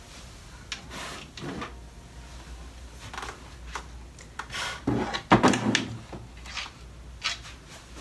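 Plastic storage drawers and containers of nail supplies being handled: a series of separate knocks and clicks, with a louder burst of clatter about five seconds in.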